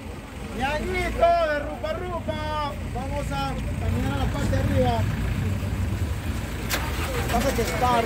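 A steady low rumble from the motor of a river vehicle ferry, with people talking over it for the first few seconds and a sharp click about seven seconds in.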